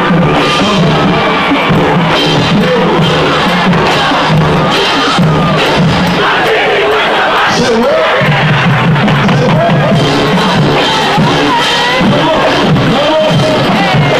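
High school marching band playing live in a stadium: sustained brass chords over drum strikes, with a crowd shouting and cheering over the music.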